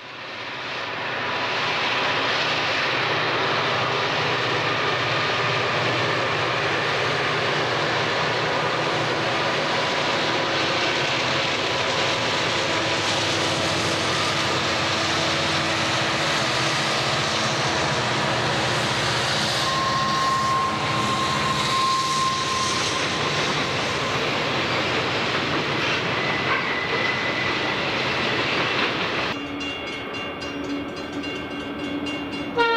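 A Santa Fe freight train passing close by: several diesel-electric locomotives working under load with a steady engine drone, then freight cars rolling past with a continuous rumble and wheel noise. The sound cuts off sharply near the end.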